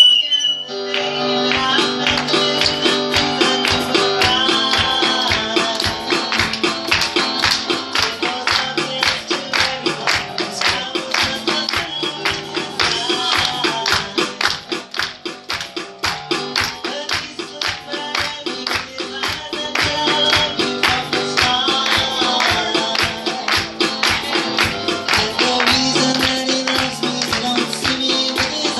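Live worship music: a woman singing into a microphone with a small band, over a fast, steady beat of sharp taps.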